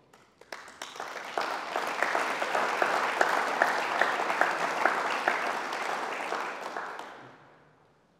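Audience applauding. The clapping builds up over the first second or so, holds steady, and dies away near the end.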